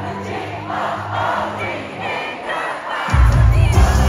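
Arena concert crowd shouting and singing along over amplified live pop music. A heavy bass beat comes in loudly about three seconds in.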